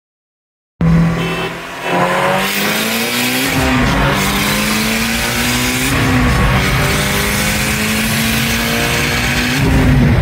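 Car engine accelerating hard through the gears, heard from inside the cabin with road noise. The pitch climbs and drops back at each gear change, about two and a half, six and nine and a half seconds in.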